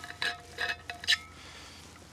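Light clinks and taps of metal camping coffee gear being handled and set down, several in the first second or so, with a short ringing note hanging after them.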